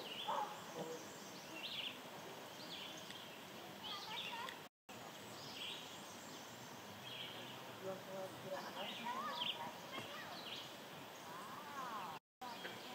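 Faint outdoor river ambience: distant voices carrying across the water, with scattered short high chirps.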